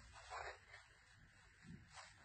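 Near silence: room tone, with a faint brief rustle of cotton fabric being folded by hand about half a second in.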